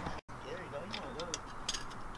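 Faint voices talking in the background, with a few light clicks in the second half; the sound drops out completely for a moment near the start.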